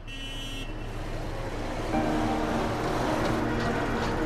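City street traffic noise fading in and growing louder, with steady held tones joining about two seconds in.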